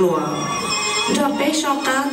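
A dance song played over loudspeakers: a voice sings gliding, drawn-out notes over steady backing music.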